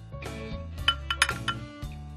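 Soft background music with a few light clicks in the middle, a kitchen knife meeting a wooden chopping board as it cuts through soft confited aubergine.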